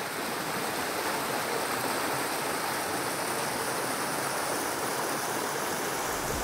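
A shallow, rocky stream running over stones in small cascades: a steady rush of water.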